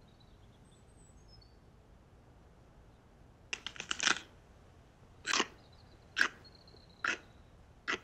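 Crunching bites into a stick of raw celery: a quick run of crackling snaps about three and a half seconds in, then single crunchy bites roughly once a second.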